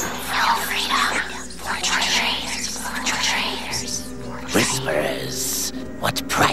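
Cartoon soundtrack: background music with voices or vocal sounds over it.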